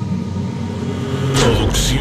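Low, steady rumbling drone of a logo-intro sound effect, then a sudden noisy whoosh-like burst about one and a half seconds in as a man's announcing voice starts.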